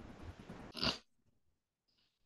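Faint hiss of an open microphone on a video call, with a short noisy crackle just before one second in; then the sound cuts off abruptly to dead silence, as when a call's noise suppression or mute closes the mic.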